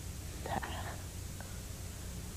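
A woman's brief, faint, soft vocal sound, like a breath or half-spoken murmur, about half a second in, over a steady low hum.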